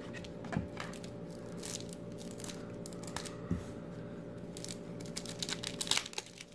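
A trading-card pack wrapper being handled and torn open by hand: scattered light crinkles and clicks, busier near the end, over a faint steady hum.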